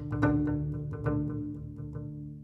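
Double bass played pizzicato: several plucked notes, each ringing and fading, the playing growing quieter toward the end.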